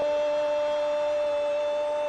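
A football TV commentator's drawn-out goal cry in Arabic, a single loud vowel held on one steady note.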